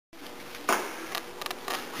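Quiet room tone with a faint steady hum, broken by a sharp knock about two-thirds of a second in and a few softer taps after it; the engine is not yet running.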